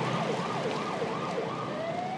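Ambulance siren going in a fast up-and-down yelp, about three sweeps a second, that changes near the end into one slow rising wail.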